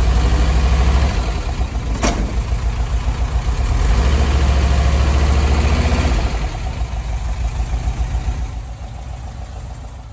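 Air-cooled flat-four engine of a 1978 Volkswagen bay-window bus running at idle, heard from beside the rear tailpipe. It runs louder for about the first second and again for a couple of seconds in the middle, with a single sharp click about two seconds in, then fades toward the end.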